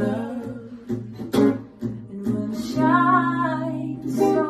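Electric guitar picked softly while a singing voice hums a wordless melody, ending on a long held note.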